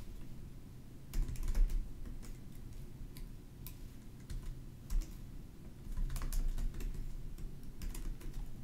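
Typing on a computer keyboard in short bursts of keystrokes: a quick run about a second in, a few single taps in the middle, and another run around six seconds.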